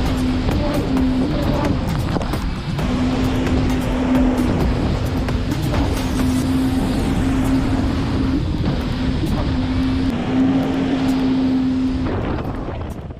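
Jet ski engine running steadily at speed, its drone mixed with rushing water and spray.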